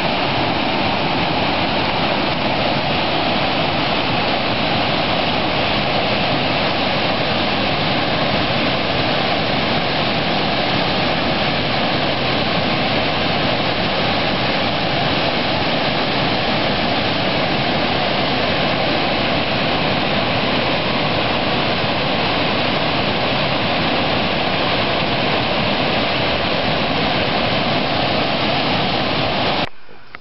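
Loud, steady rush of a small waterfall cascading over boulders into a pool, cutting off abruptly just before the end.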